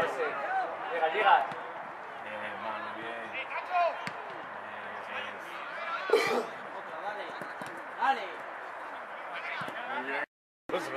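Indistinct shouts and calls from players and spectators across an open football pitch during play, a few louder calls standing out over a low background murmur.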